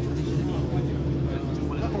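A steady low mechanical drone under faint voices.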